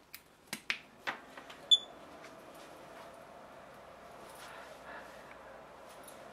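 A few light clicks of a plug and cord being handled, then one short, high electronic beep as the toaster oven's Arduino reflow controller powers up, followed by a faint steady hum.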